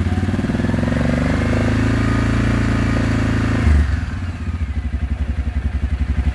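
2007 Suzuki KingQuad 700's single-cylinder four-stroke engine running. It is revved up and held for about three seconds, then drops abruptly back to a steady idle.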